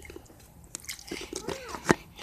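Small clicks and handling noise from a phone held against the face, with a short "ah" from a girl about one and a half seconds in, and a sharp click just before the end.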